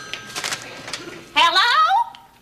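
A telephone receiver is picked up with a few short clicks. In the last half-second a woman's voice comes in, a drawn-out sound with a wavering pitch.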